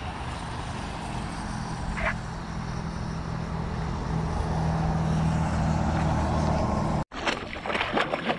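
Low, steady engine hum of a motor vehicle, growing gradually louder, with one brief high chirp about two seconds in. The hum cuts off abruptly near the end.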